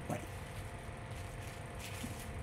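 Faint rustling of small plastic zip bags of diamond painting drills being handled and set down, over a steady low hum.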